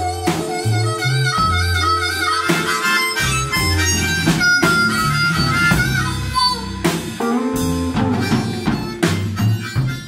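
Blues band playing live: a harmonica played cupped against a microphone takes the lead line over electric guitar, electric bass and a drum kit, with a steady beat.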